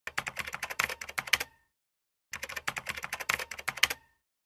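Rapid key-typing clicks, about ten a second, in two runs of about a second and a half each, with a short pause between them. Each run ends with a brief faint ring.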